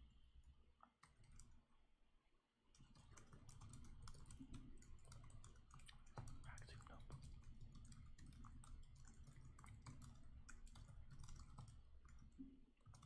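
Faint, rapid typing on a computer keyboard: a dense run of key clicks over a low steady hum, with a short lull about two seconds in.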